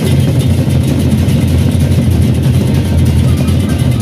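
Gendang beleq ensemble playing: large Sasak barrel drums beaten in fast, dense strokes under a steady clash of hand cymbals.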